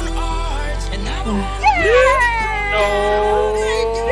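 Background music. In the second half a high pitched voice-like sound slides down and then holds one long note.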